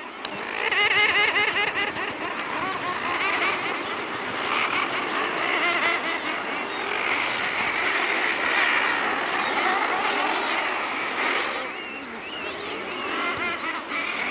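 Thick-billed murre colony calling: many adults on the cliff ledges calling over one another in a dense, continuous chorus of wavering calls.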